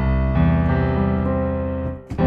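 Sampled grand piano (CinePiano) playing a C major chord voiced low, with the third (E) just above the bass C. Low notes sound at once and more join about a third of a second in, held and slowly fading, then released near the end. With the third this close to the bass the chord sounds a bit too heavy, its notes clashing a little.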